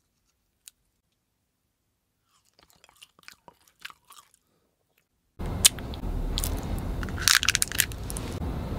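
Faint, sparse mouth crackles of bubble gum being chewed. About five seconds in comes a louder recording with background hiss and sharp crunching crackles from a wrapped candy bitten in the teeth.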